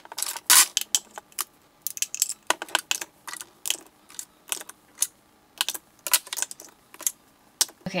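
Lipstick tubes clicking and clattering against one another and against a clear acrylic lipstick organizer as they are picked out of a drawer and slotted in, in irregular sharp taps.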